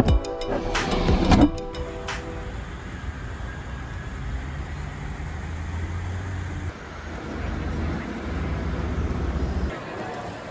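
Background music with sharp clicks that stops about a second and a half in, followed by outdoor street ambience: a steady rush of road traffic with a low hum.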